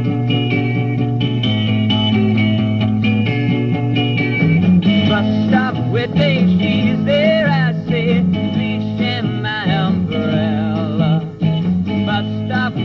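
A rock band playing live, with electric guitars and a Fender bass guitar. The music fills out about four and a half seconds in, and a wavering melody line rides over it.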